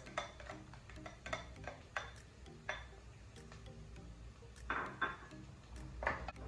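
A spoon scraping and tapping chopped garlic off a plastic bowl into a pot of frying onions, then stirring: scattered light clicks and scrapes, with a few louder knocks about five seconds in. Faint background music runs under it.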